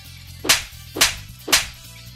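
Three sharp cartoon slap sound effects, about half a second apart, over low background music.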